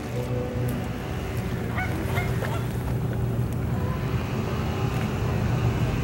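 About three short waterfowl honks in quick succession, about two seconds in, over a steady low rumble.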